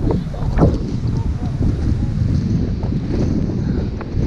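Wind buffeting the camera microphone: a loud, gusty low rumble, with a couple of sharp knocks in the first second.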